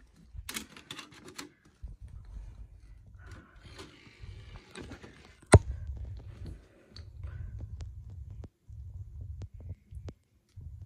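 Clicks and knocks of a DVD player being loaded and handled, with one loud sharp click about five and a half seconds in, over a low rumble that starts and stops.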